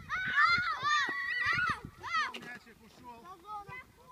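Children shouting and calling out on a football pitch, with loud, high-pitched cries for the first two seconds, then quieter voices. A single sharp knock comes a little past halfway.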